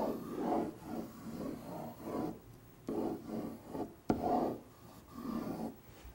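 Marker drawing on a whiteboard: a run of separate rubbing strokes, some longer and some shorter, with short pauses between them.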